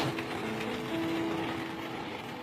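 City street traffic noise, with soft background music coming in under it as a few held notes from about half a second in.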